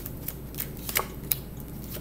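A deck of tarot cards being shuffled and handled, making a few short sharp snaps and flicks, the loudest about halfway through.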